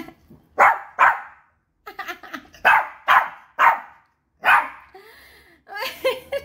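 Toy poodle barking in about seven short, sharp barks over four and a half seconds, which the owner takes for the dog being angry.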